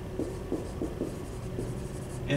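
Dry-erase marker writing on a whiteboard, a series of short separate strokes.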